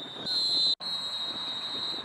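A referee's whistle blown in one long, steady, high blast, which cuts out for an instant a little under a second in and then carries on.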